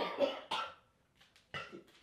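A man laughing hard in short, breathy, cough-like bursts away from the microphone: a few bursts in the first moments, a pause of nearly a second, then one last short burst near the end.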